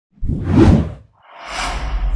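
Two whoosh transition sound effects from an animated title intro. The first is short and sweeps past within the first second. The second swells up more slowly and runs into a low rumble.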